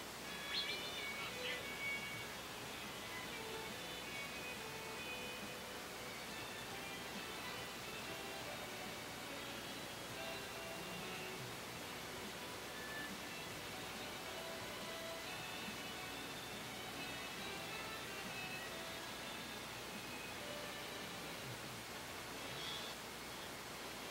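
Faint, steady arena background noise with scattered faint, brief distant tones and no clear event.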